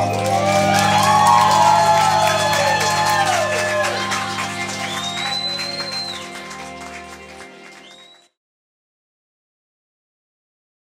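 The last acoustic guitar chord ringing out while the audience claps and whoops. It all fades and cuts to silence a little after eight seconds.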